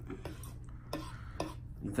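Metal fork lifting and spreading soft cooked ramen noodles on a wooden cutting board, with a few light clicks of the fork against the board.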